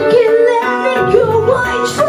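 Live rock band playing, with a woman singing lead into a microphone; her voice slides and wavers over the band.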